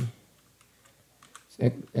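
A few faint keystrokes on a computer keyboard, typing into a search box.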